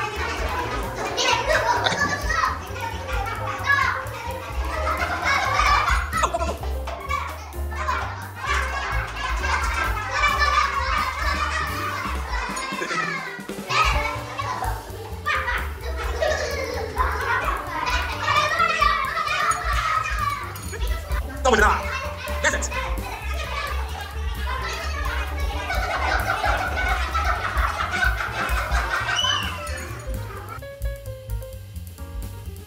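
Young children's voices chattering and calling out during a classroom game, over background music with a steady low beat.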